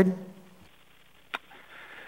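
The end of a woman's speech, then a pause of faint hiss from the telephone line, with a single short click about halfway through.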